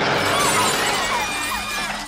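Film sound effects of an automatic weapon firing into glass display cases: a sudden, dense spray of shots and shattering glass, over the film's music.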